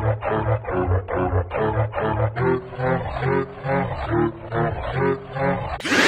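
Effect-distorted song audio from a deepfake lip-sync: a muffled, pitch-processed vocal or music loop pulsing about three to four times a second over deep bass. Just before the end it switches abruptly to a louder, brighter distorted sound.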